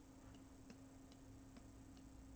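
Near silence with faint computer mouse clicks, about two or three a second, over a low steady hum.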